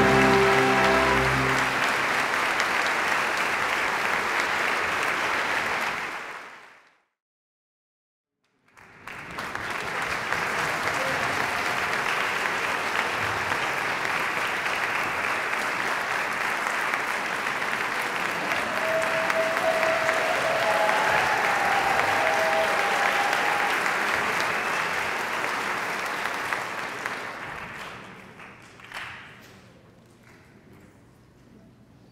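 Theatre audience applauding as the orchestra's final chord rings away. The applause drops out for about two seconds a quarter of the way in, resumes strongly, and fades near the end.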